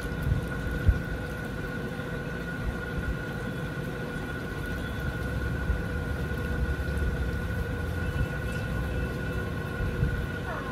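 Steady low rumble with a constant hum, and a couple of short knocks about a second in.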